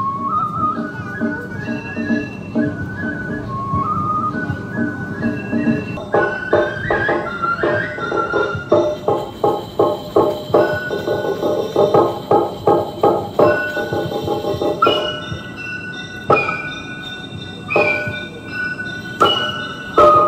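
Japanese festival music accompanying a shishimai lion dance: a bamboo flute plays a stepping melody. About six seconds in, a fast, even beat of percussion strikes joins it, growing sparser near the end.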